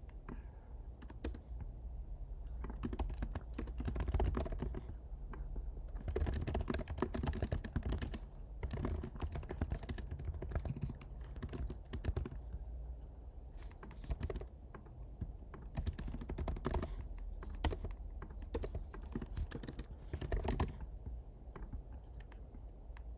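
Computer keyboard typing in quick bursts of key clicks with short pauses between them, over a low steady hum.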